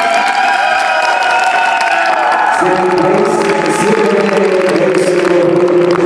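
Audience applause over music with long held chords; the chord changes about two and a half seconds in.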